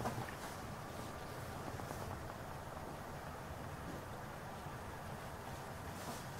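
Faint, steady low hum with hiss, the room tone of a quiet room, with a small click right at the start.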